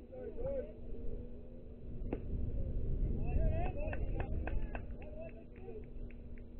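Faint voices calling out from around a youth baseball field, with a single sharp crack about two seconds in and a low rumble that swells in the middle. A run of short clicks and calls follows near the end.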